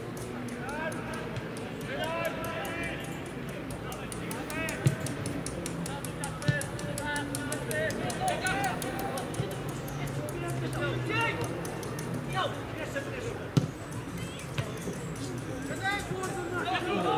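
Football players shouting and calling to each other on the pitch during open play, with a few sharp thuds of the ball being kicked.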